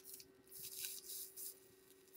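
Faint, short hissing crackles from a genesis atomizer's wire coil and steel mesh wick being fired in brief pulses on a weak battery, burning the mesh in so it insulates itself where the wire touches and does not hotspot. A click at the very start.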